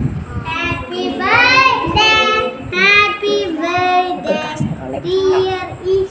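Children singing a birthday song together, with hand clapping underneath.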